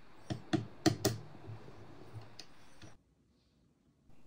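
Small metal Allen key clicking and tapping against a screw as the screw is tightened from beneath. There are several sharp clicks in the first second or so and a few fainter ones after. The sound cuts off suddenly about three seconds in.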